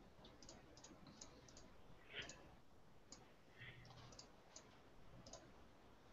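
Near silence over a video call, with faint, irregular clicks scattered through it.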